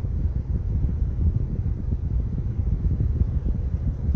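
Low, steady rumble inside a car, with wind buffeting the microphone.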